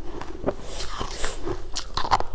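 Crunching and biting of frozen sugar-coated sweet ice balls, heard close up, with short crackly noises throughout and sharper crunches near the end as a ball is bitten into.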